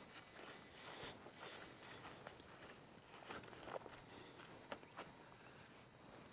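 Faint, soft footsteps on grass, a few irregular steps over near silence.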